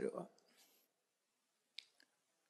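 A man's speech trails off just after the start, then near silence, broken by one short, faint click near the end.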